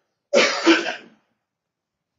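A man clearing his throat with a cough: one short burst under a second long, starting a moment in.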